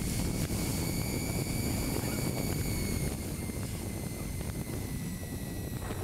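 Bee Challenger e-bike's 750 W electric motor whining steadily under wide-open throttle, with wind and tyre noise underneath.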